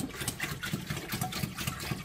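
Water pouring from a one-gallon plastic jug into a hydroponic grow box's water tank, with a rapid, uneven glugging as air gulps back into the jug.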